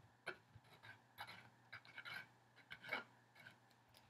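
Faint, irregular scratching and tapping of a glue bottle's applicator tip being rubbed over the back of a piece of canvas.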